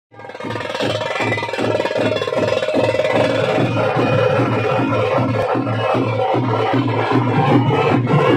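Drum-led percussion music with a steady beat of about three strokes a second and a held tone above it, typical of the drum and wind ensemble that accompanies Veeragase dance.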